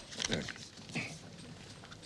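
Two brief, quiet vocal sounds from a man, falling in pitch, the first near the start and the second about a second in, over faint room noise.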